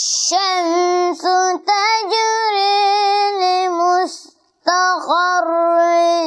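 A boy chanting Quranic recitation in Arabic, in long, held melodic phrases in a clear high voice. It breaks off briefly several times and pauses for about half a second around four seconds in before the next phrase.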